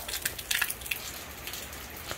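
Light rain falling outdoors: a steady soft hiss with a few scattered drop taps in the first second.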